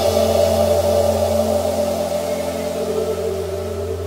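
Background music: a sustained low electronic drone of steady held tones with no beat, slowly getting quieter.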